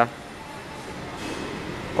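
Steady background machine noise, an even drone like a fan or air conditioner running, with no distinct strokes or tones.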